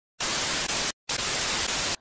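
Television static: loud, even white-noise hiss in two blocks, broken by a short silent gap just before the middle.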